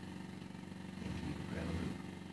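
Riding lawn mower's small engine running steadily at idle while the mower stands behind the pickup it has been pushing.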